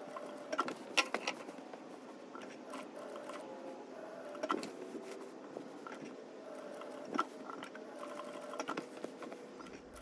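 Juki sewing machine running, stitching an embroidered patch onto a denim jacket, with scattered clicks.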